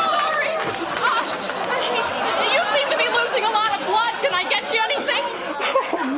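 Several voices talking and exclaiming over one another, too jumbled for clear words.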